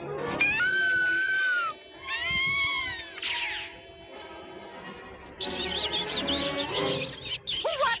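Cartoon soundtrack: background music with high-pitched, squeaky character cries. There is one held cry early, two shorter rising-and-falling ones, and about two seconds of rapid wavering squeaks in the second half.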